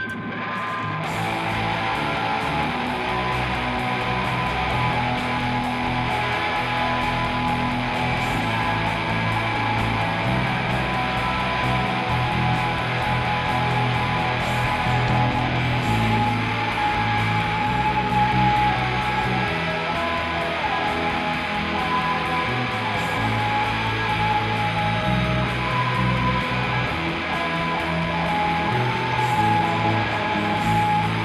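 Live band playing a song's instrumental intro on electric guitars, bass guitar and keyboard, at a steady loudness without vocals.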